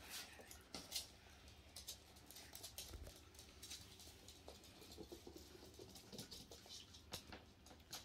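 Faint, scattered clicking patter of small dogs' claws and paws on a laminate floor as chihuahua puppies scamper about; otherwise near silence.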